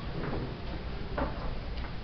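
Poster board being handled on an easel: two or three short, light knocks and taps over a steady low room hum.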